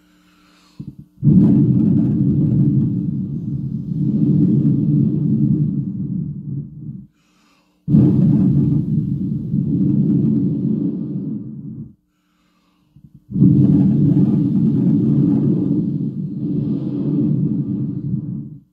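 Long breaths blown straight into a handheld microphone, heard as a loud rumbling wind noise on the mic, in three long blows of four to six seconds each with short pauses between. The blowing is meant as a wave of the anointing sent out to listeners.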